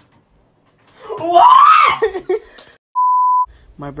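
A young man yells loudly, his voice rising in pitch, for about a second and a half, then a short steady beep of one pitch sounds about three seconds in, a censor bleep.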